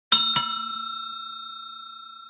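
Bell-ding sound effect for a notification-bell animation: two quick strikes, then one clear ring fading slowly away.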